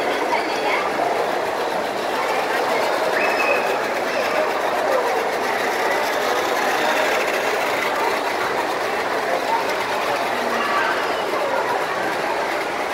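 Steady babble of many voices from a crowd, mixed with the whirr of battery-powered toy trains running along plastic track.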